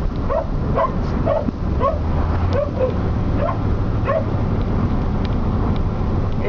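Excited dog giving short, high yelping whines, roughly two a second, over the steady low drone of a moving car.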